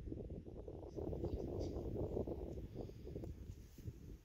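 Faint, uneven low rumble and rustle of wind buffeting the microphone outdoors, with no lowing or other clear animal call.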